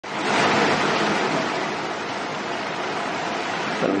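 Loud, steady rushing noise like hiss, starting abruptly and easing off slightly. A man's voice begins just before the end.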